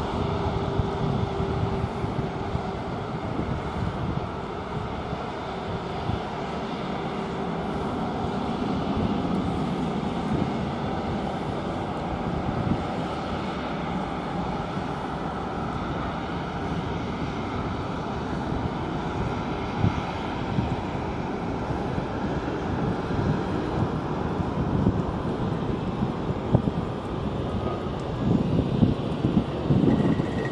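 Distant jet airliners taxiing, a steady rumble with a faint whining tone that fades out over the first several seconds, under wind buffeting the microphone.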